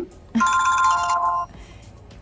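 Mobile phone ringtone: a chord of steady electronic tones sounding for about a second, then cut off suddenly as the phone is silenced.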